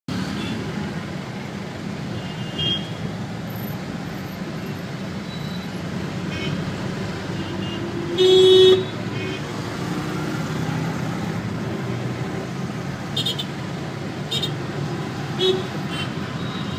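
Dense city traffic heard from inside a taxi: a steady rumble of engines and tyres, with vehicle horns tooting again and again. The loudest is a half-second honk about eight seconds in, and several short beeps come near the end.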